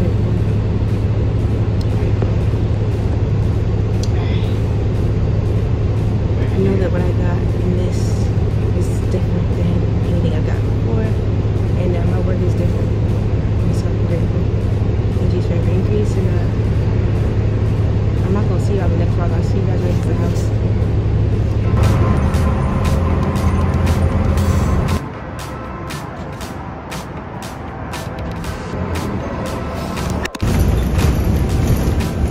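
Steady low drone of a city bus running, heard from inside the passenger cabin. The hum shifts about 22 seconds in and drops to a lower level a few seconds later.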